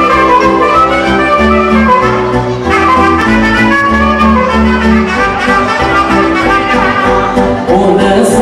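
Live dance band playing an instrumental passage: a wind-instrument lead melody over held bass notes that change every second or so.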